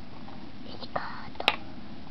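A person whispering briefly about a second in, followed by a single sharp click about one and a half seconds in.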